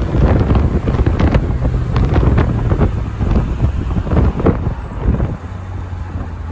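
Wind buffeting the microphone in the open cockpit of a moving 1961 Jaguar E-Type roadster, over the low drone of its 3.8-litre straight-six. The gusty rush eases a little near the end.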